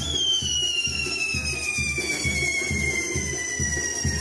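A whistling firework giving one long, high whistle that falls steadily in pitch, over dance music with a steady drum beat.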